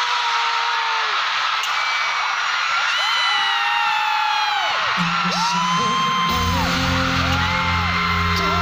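A large arena crowd screaming and cheering, many high shrieks rising and falling over one another, while concert intro music plays over the PA. About five seconds in, a deep bass note comes in, and a second later a steady pulsing bass beat starts.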